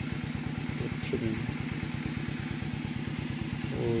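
A small engine running steadily at idle with an even, rapid low throb. Brief voices are heard over it about a second in and again near the end.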